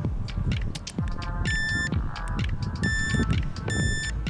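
Levy electric scooter's display unit giving three short, high electronic beeps, irregularly spaced, over background music with a steady beat.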